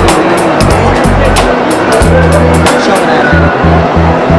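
Background music with a fast, steady beat and deep bass notes that change pitch every half second or so.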